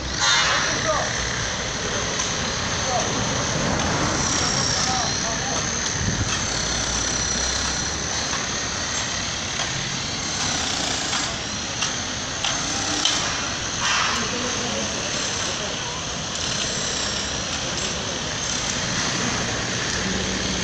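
Street ambience at a roadworks site: a steady wash of road traffic with indistinct voices and a thin high whine running through it.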